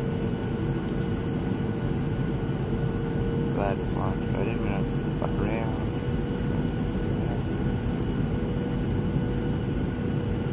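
Steady jet airliner cabin noise during the landing approach: engine and airflow noise with a steady hum, heard from a window seat over the engine.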